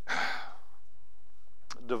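A man draws a breath at the pulpit microphone right at the start, then a short pause over low room hum, with a brief click near the end just before he speaks again.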